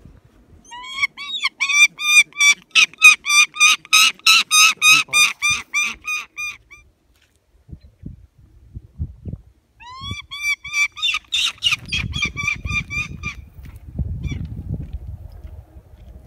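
A young bird of prey on a falconry glove calling in a rapid run of high-pitched notes, about five a second, for some six seconds, then after a pause a second, shorter run of about three seconds. A low noise comes in near the end.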